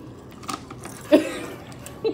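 A woman's short burst of laughter about a second in, dropping in pitch, with faint small handling noises around it.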